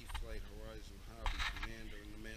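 A person talking, low and indistinct, over a steady low rumble, with a brief noisy rustle about a second and a quarter in.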